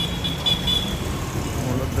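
City street traffic: a steady low rumble of vehicles, with a brief high-pitched beep in the first second.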